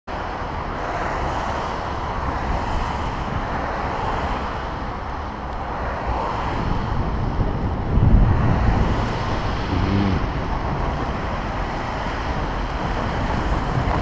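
Wind rushing over the microphone of a camera on a moving bicycle: a steady low rumble and buffeting, with road traffic from cars in the lane alongside. A louder burst of low buffeting comes about eight seconds in.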